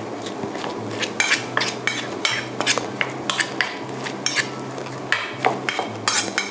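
A metal spoon clinking and scraping against a stainless steel bowl while mixing minced pork with a pounded herb paste: irregular clicks, several a second.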